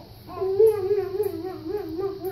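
A baby's drawn-out whining cry, one long wavering note starting about a quarter second in.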